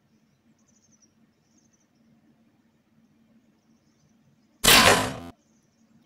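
A single loud, sharp bow shot, the string released and the arrow launched, about three-quarters of the way in and lasting under a second. A faint outdoor background comes before it.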